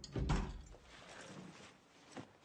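A door closing with a dull thud, followed by a fainter rustling noise.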